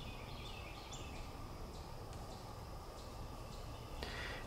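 Quiet outdoor background with a few faint, short bird chirps.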